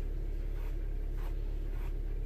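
A hand stroking a golden retriever's long fur: three soft rustling strokes, over a steady low hum inside the car.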